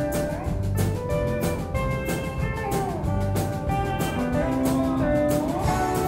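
Live country band playing: a steady beat of about two strokes a second under guitars and bass, with a lead line whose notes slide up and down between pitches.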